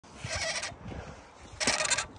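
A stiff old engine being turned over by hand with a pipe wrench, giving two squeaky creaks, the second louder, near the end: the engine turns and is not seized.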